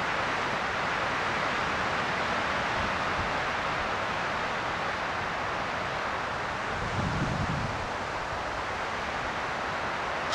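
Breeze blowing steadily through foliage, an even rustling hiss, with a low rumble of wind on the microphone about seven seconds in.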